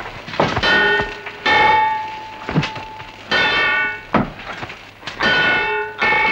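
Swords clashing in a melee: about four metallic clangs, each blade strike ringing on for half a second or more.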